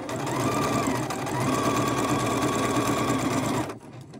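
Necchi 102D electric sewing machine stitching through fabric at a steady speed. It slows briefly about a second in and stops near the end.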